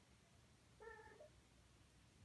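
A single short meow from a Siamese kitten about a second in, against near silence.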